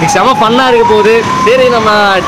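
A man talking close to the microphone, with a thin high tone underneath that slowly dips in pitch and then rises again.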